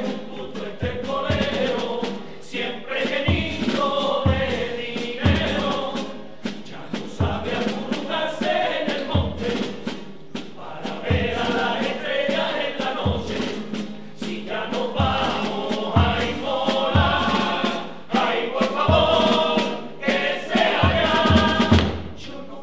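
Male carnival chirigota chorus singing together, with a bass drum beating roughly once a second and sharp drum taps keeping the rhythm.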